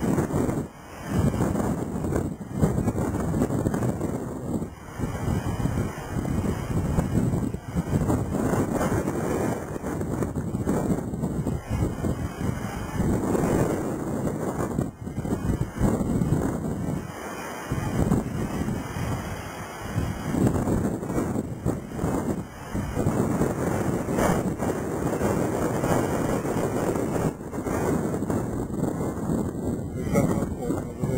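Strong gusty wind blowing across the microphone: a rough rushing noise that swells and dips with the gusts.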